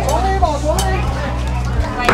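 People talking, their voices overlapping, over a steady low hum that drops away near the end.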